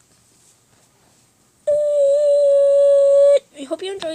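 A person's voice holding one long, steady high note for just under two seconds. It comes in about halfway through after a near-quiet start and cuts off abruptly, with speech following right after.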